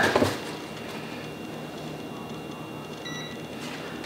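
Quiet room with faint handling of a handheld CEM DT-9935 LCR meter, and one short, faint, high beep from the switched-on meter about three seconds in.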